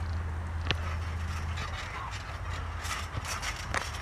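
Faint creaks and light knocks from a backyard trampoline's mat and springs as wrestlers shift on it, with one sharp click under a second in, over a steady low rumble.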